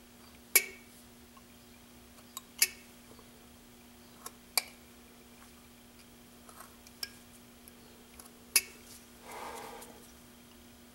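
Hand carving with a knife: sharp clicks as the blade cuts small chips out of the wood, four loud ones a couple of seconds apart with fainter ticks between. A short rustle near the end as the gloved hands turn the carving.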